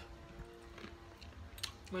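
Faint sounds of people eating fried chicken by hand: quiet chewing and mouth sounds, with a few light clicks near the end, over a faint steady hum.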